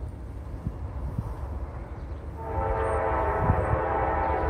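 Air horn of an approaching Norfolk Southern freight locomotive, sounding one long steady chord of several notes that starts a little past halfway through, over a low rumble.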